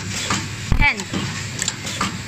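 A man's voice saying the single word "ten" about a second in, over a steady background hum.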